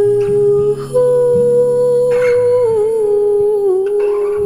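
A woman's voice holding a long wordless note with lips nearly closed. The note steps up in pitch about a second in, then wavers back down near the end. Soft acoustic guitar chords ring underneath.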